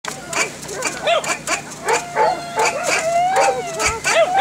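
Dog yelping and whining in a rapid string of short calls that rise and fall, with one longer drawn-out whine near the end.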